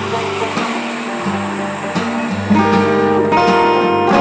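Acoustic folk instrumental of plucked strings, a banjo tuned like a dulcimer with acoustic guitar, picked and strummed. A fuller, louder chord comes in about two and a half seconds in.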